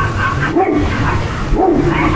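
A dog barking repeatedly, roughly one bark a second, over steady background noise.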